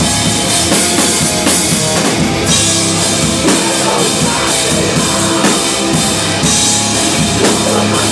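Hardcore band playing live and loud: guitars and bass over a drum kit, with cymbal crashes throughout.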